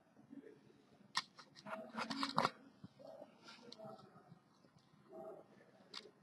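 Handling noise from cables and connectors being fiddled with: a sharp click about a second in, a quick cluster of clicks around two seconds, then softer rustling.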